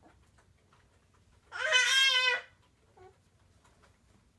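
A baby's loud squealing vocalization, about a second long, pitched high with a wavering tone, about halfway through, followed by a brief faint coo.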